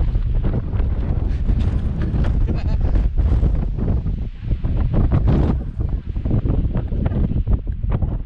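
Wind buffeting a GoPro's microphone: a loud, gusting low rumble that rises and falls unevenly.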